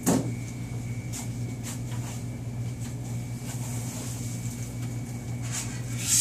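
Steady low room hum with a sharp click at the start and a few faint knocks and clicks after it.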